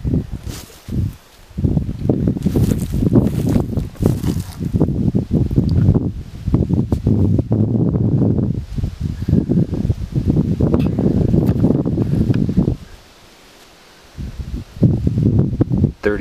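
Loud, low rustling and rubbing from gloved hands handling a freshly dug coin right at the microphone. It stops about thirteen seconds in and comes back briefly near the end.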